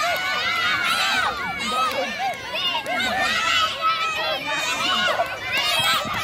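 A crowd of children shouting and cheering at once, many high voices overlapping without a break.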